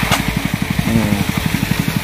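Small engine of a rice thresher running steadily with a fast, even beat.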